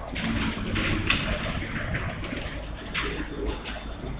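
Marker pen writing on a whiteboard: a run of short scratchy strokes over a steady low room hum.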